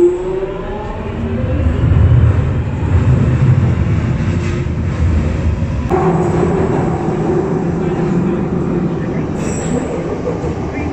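Jubilee line Underground train pulling out of the station into the tunnel. Its motors whine up in pitch at first, then wheels and motors rumble loudly, with a sudden change in tone about six seconds in.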